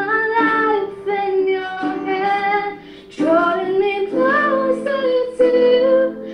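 A recorded Christian worship song with a woman singing a slow melody in long held notes, phrase by phrase, with short breaks between phrases.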